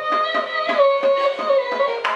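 Carnatic music in raga Bhairavi: a gliding, ornamented melodic line from a female voice and violin, over mridangam strokes at about five a second.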